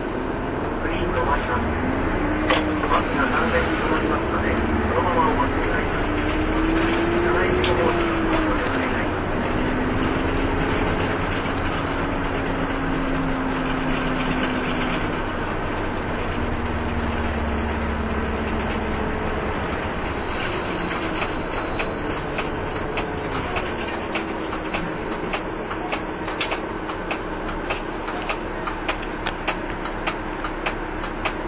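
Inside a city bus on the move: the engine note rises and falls as the bus accelerates, holds speed and slows, over road noise and small rattles. A thin high whistle sounds for several seconds in the second half, and evenly spaced ticking comes in near the end.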